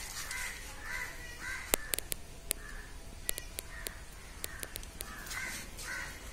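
Birds calling outdoors: a run of short calls about twice a second at the start and again near the end, with a scattering of sharp clicks in between.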